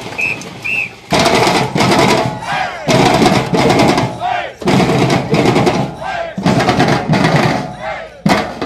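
Two short, high whistle beeps, then a group of voices shouting together in four loud bursts of about a second and a half each, like a chant called out in unison.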